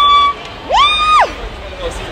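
A woman's high-pitched excited squeal that is held and breaks off about a third of a second in, then a second, shorter squeal that rises, holds and drops away.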